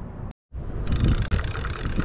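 Steady wind rumble on the microphone over open water, dropping out for a moment at an edit a third of a second in, then going on with a few faint ticks from handling the reel.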